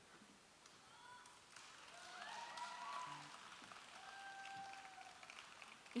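Faint, scattered audience applause with a few distant cheers, swelling a little in the middle and dying away.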